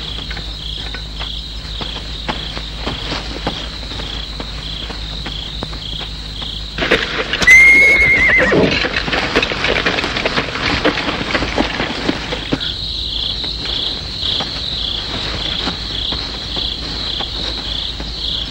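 A horse neighs once, loudly, about eight seconds in, amid several seconds of hoofbeats, over a steady pulsing chirp of crickets.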